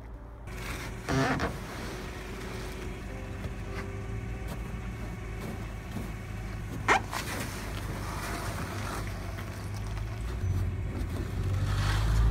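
Low, steady rumble of a vehicle engine running, with a short louder clatter about a second in and a sharp knock near seven seconds from a wooden shipping crate being handled on a pickup's bed.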